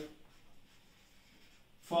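Faint sound of a marker pen writing on a whiteboard, with a man's voice starting again near the end.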